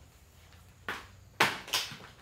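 Three short, sharp knocks or clatters from training gear being handled while a heavier spring is fetched. They come about a second in, then twice close together near the end; the middle one is the loudest.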